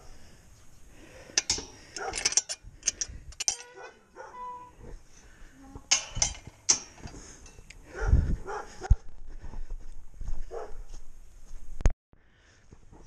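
A muzzled farm dog barking several times, with a whine about three to four seconds in.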